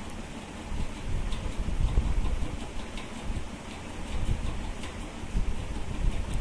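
Low, uneven rumbling background noise, with faint short scratches of a felt-tip marker writing on a whiteboard.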